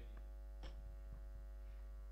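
Steady electrical mains hum with its even overtones, through the microphone and sound system, with one faint click a little over half a second in.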